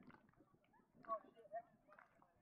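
Faint, distant voices of people talking on an open field, with a couple of short, clearer calls about a second and a second and a half in.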